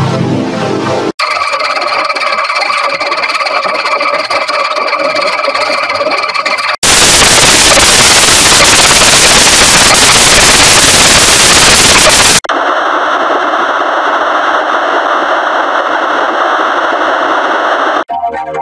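Heavily effects-processed, distorted audio that jumps abruptly between sections. A thin, hissy, filtered stretch starts about a second in. About seven seconds in, a very loud burst of static-like noise takes over for about five and a half seconds and cuts off sharply into another hissy, filtered stretch.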